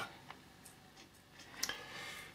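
Quiet room tone with a few faint clicks spread through it, the most noticeable a little past the middle.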